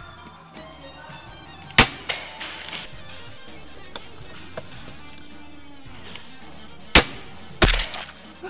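Sharp single shots from spring-powered airsoft rifles: one about two seconds in and two close together near the end, over background music.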